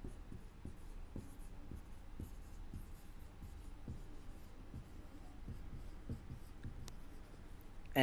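Marker pen writing on a whiteboard: faint, irregular scratching strokes as the words are written out.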